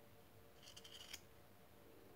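Faint scrape of a knife blade shaving a small piece of wood, one stroke lasting about half a second near the middle.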